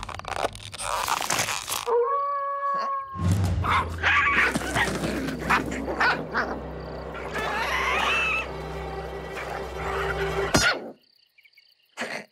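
Animated cartoon soundtrack: background score mixed with comic sound effects, sharp hits and a short held squeal-like tone about two seconds in. It cuts out to near silence just before the end.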